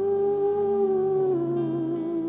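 A woman singing one long held note into a microphone, with no words, stepping down to a slightly lower note about a second and a half in and wavering a little on it, over a soft sustained instrumental accompaniment.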